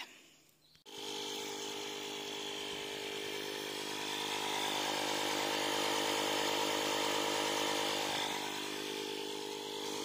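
Portable electric tyre inflator running steadily while pumping up a van tyre. It starts about a second in and grows a little louder in the middle.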